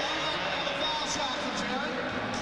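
Steady murmur of a basketball arena crowd, an even noise with no single event standing out.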